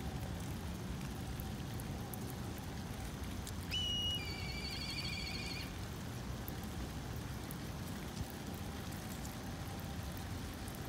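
A steady patter of light rain on wet gravel. About four seconds in comes a single high-pitched animal call lasting about two seconds: a short steady note that drops into a lower, wavering trill.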